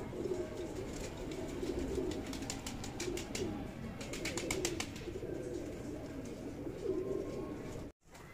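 Domestic pigeons cooing, low rolling calls repeating over and over. Two short runs of sharp clicks come about three seconds in and again about four and a half seconds in.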